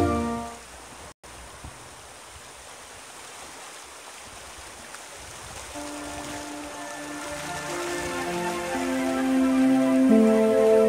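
Background music fades out in the first second; after a brief cut, the steady rush of a shallow, rocky river's water is heard, and music fades back in from about six seconds, growing louder.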